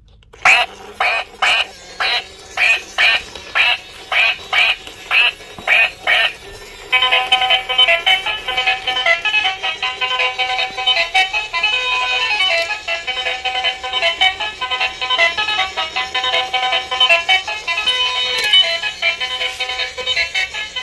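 Battery-powered light-up toy duck's small speaker playing a string of electronic quacks, about two a second, then switching about seven seconds in to a tinny electronic tune that keeps playing.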